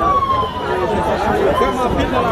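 A siren wailing, its pitch sliding slowly down, over the chatter of voices.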